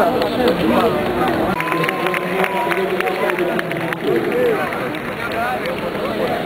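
Indistinct voices and chatter of a small crowd, with a quick run of sharp taps for a couple of seconds from about a second and a half in.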